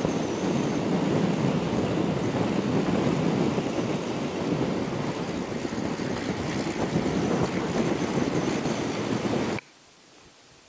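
Wind rushing over a helmet-mounted camera microphone on a scooter riding at speed, with road noise under it. The sound is a steady rush with no clear engine note, and it cuts off abruptly near the end.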